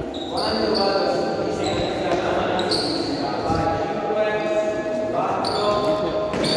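A basketball bouncing on a gym floor during a game, in a large echoing hall, with players' voices.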